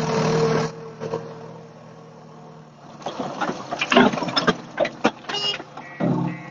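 JCB backhoe loader's diesel engine running at high revs, dropping back less than a second in. From about three seconds in comes a run of irregular knocks and clatter as the bucket tips soil into a tractor trolley.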